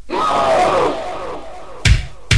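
Many voices shouting together, falling in pitch over about a second. Near the end comes the first heavy kick-drum hit of an EBM track.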